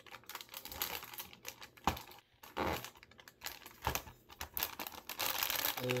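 Cardboard lantern and its clear plastic window film being handled and pressed into shape: irregular rustling and crinkling with light clicks and taps of the card.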